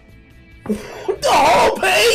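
A man lets out a loud, drawn-out wailing cry with a swooping pitch, starting under a second in, over faint background music.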